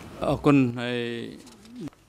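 A man's voice drawing out a long, wordless hesitation sound on one steady low pitch, ending with a brief rise and fall in pitch.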